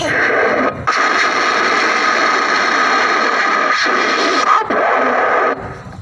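A loud, even hiss of noise with no words in it. It breaks off briefly about a second in, runs on for about five seconds more, and then cuts off suddenly.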